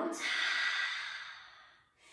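A woman's long audible exhale, a breathy sigh that fades away over about a second and a half.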